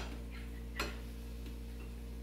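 A metal spoon clicking once lightly against a ceramic bowl, with a fainter tap shortly before it, over a steady low hum.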